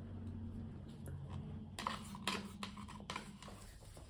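Faint low hum, then from about two seconds in a few light clicks and knocks as a plastic paint cup and stirring stick are handled while paint is poured out onto canvas.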